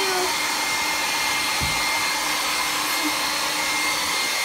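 Handheld hair dryer blowing steadily on a Saint Bernard's coat: an even rushing air noise with a thin steady whine. A brief low bump about one and a half seconds in.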